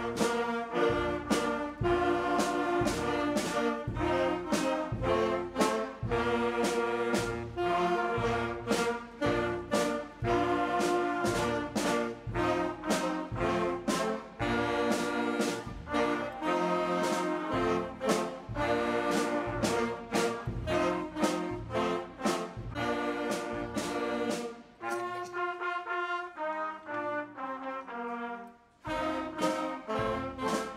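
Middle school concert band playing, brass and woodwinds together with regular drum hits; the full band comes in all at once at the start. About 25 seconds in the music thins to a lighter passage, with a brief drop just before the end before the band comes back in.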